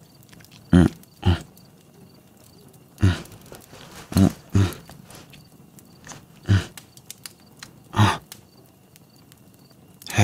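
A man's voice making short, low moans and grunts, about seven in all, spaced irregularly with quiet breathing gaps and faint small clicks between them.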